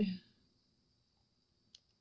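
A single light click just before the end, from a small plastic dropper bottle being handled while red pigment is squeezed into a mixing cup. The rest is quiet.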